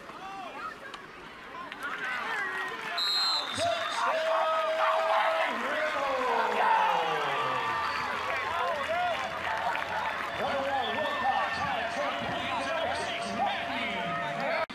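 Spectators at a high school football game cheering and shouting together as a play unfolds, swelling loudly from about two seconds in. A short high whistle blast comes about three seconds in, and a steady held horn-like tone sounds through much of the second half.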